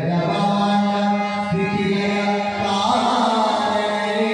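Men's voices singing a Kannada devotional bhajan in a chanting style, over the held notes of a harmonium. The singing grows fuller about three seconds in.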